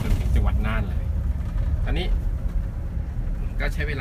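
Steady low rumble of a tour coach's engine and road noise, heard from inside the cabin while the coach drives along the highway, with short bits of a voice in the first second and again about two seconds in.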